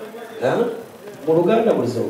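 A man speaking into a handheld microphone: a short phrase about half a second in, then a longer one from about a second and a half in.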